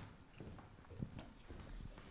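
Faint footsteps crossing a hard floor: a few light, uneven taps over quiet room tone.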